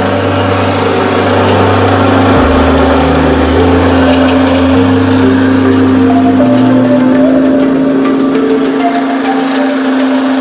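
Small electric rice mill running, a steady motor hum with the hiss and rattle of grain passing through as paddy is milled into white rice, with background music underneath.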